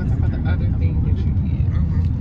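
Steady low rumble of a car being driven, heard from inside the cabin, with faint talk over it.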